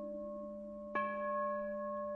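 Bowl bell ringing steadily in devotional background music; about a second in it is struck again, adding brighter ringing overtones that slowly fade.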